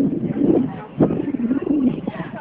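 A person's wordless vocalizing with a wavering, sliding pitch, starting again sharply about a second in.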